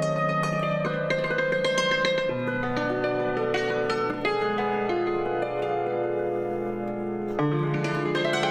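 Cimbalom played solo with cotton-tipped hammers: fast runs of struck notes that ring on over one another above a sustained bass note. The bass drops to a lower note about two seconds in and returns near the end.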